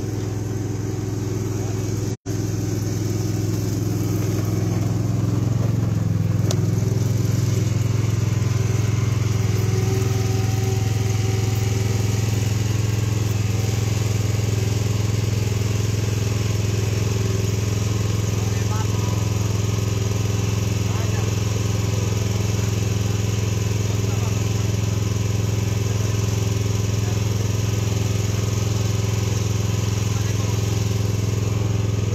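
A steady engine or motor drone with a low hum that holds unchanged, cutting out for an instant about two seconds in.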